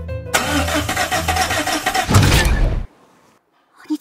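Car engine running and then stalling: a loud, rough burst that cuts off suddenly a little under three seconds in, the engine dying.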